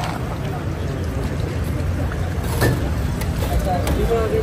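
Busy street ambience at a roadside stall: a steady low rumble with indistinct voices of a crowd, and a short sharp click about two and a half seconds in.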